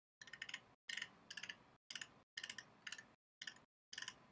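Faint clicking in short bursts, about two a second, with dead silence between them: clicks from the keys or mouse of a computer at the desk.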